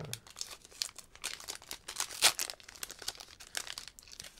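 Foil wrapper of a Pokémon Paldean Fates booster pack being torn open and crinkled by hand, with a string of irregular crackles. The sharpest one comes a little past the middle.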